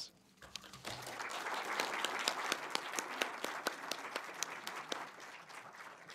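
A small seated audience applauding. The clapping starts about half a second in, builds, then slowly dies away near the end.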